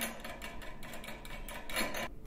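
Rapid run of mechanical clicks as a pole-mount bracket bolt is tightened around a steel pole.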